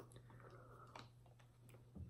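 Near silence: a steady low room hum with a few faint, scattered small clicks.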